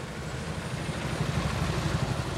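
Harley-Davidson V-twin motorcycle engine running as the bike rides past in street traffic, its low rumble growing louder.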